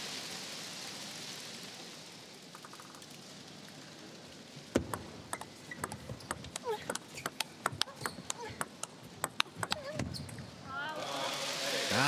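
Table tennis doubles rally: a quick, irregular run of sharp clicks as the ball strikes the bats and the table, starting about five seconds in and lasting about five seconds. Before it the hall's crowd noise dies away, and near the end shouts and cheering rise as the point is won.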